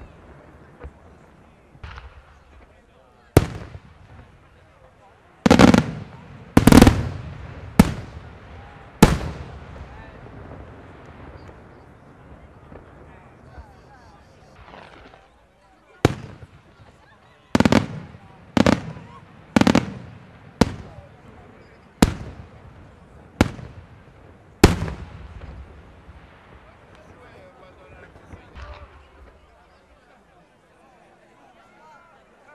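Aerial firework shells bursting: a dozen or so sharp, loud bangs at irregular intervals, each trailing off in an echo, in two clusters, the first from about three to nine seconds in and the second from about sixteen to twenty-five seconds in.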